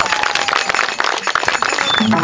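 Audience applauding: many hands clapping in a dense, steady patter once the dance music has stopped.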